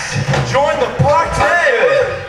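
A man talking into a stage microphone through the PA, with low thumps underneath.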